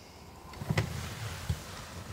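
A sharp click just under a second in and a short low thump about half a second later, over a low rumble.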